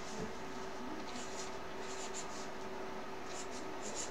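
Felt-tip marker writing on a paper poster: a few faint, short scratchy strokes.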